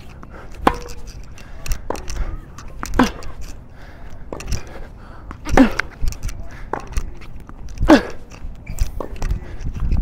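Tennis rally on an outdoor hard court: sharp racket-on-ball strikes about every two and a half seconds, most with a short grunt from the hitter, and fainter ball bounces and hits from across the court between them.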